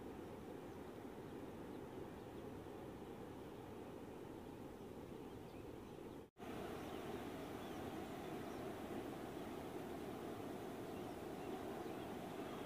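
Faint, steady wash of breaking ocean surf. It is cut by a brief moment of silence about six seconds in and comes back slightly louder.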